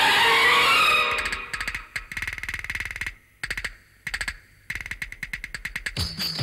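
Instrumental interlude of a Hindi film song: a swirling synthesizer wash that fades about a second in, giving way to fast repeated plucked-string notes in short phrases with brief pauses between them.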